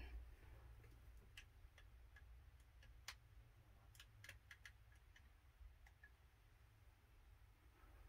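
Near silence: room tone with a low steady hum and a scattered handful of faint small clicks, one a little sharper about three seconds in.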